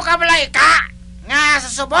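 A person's voice in two stretches, the first breaking off just before the one-second mark and the second starting a little over a second in.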